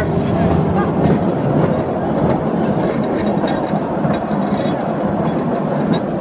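Narrow-gauge mine train running through a rock tunnel: a steady rumble of the wheels on the track with scattered clicks.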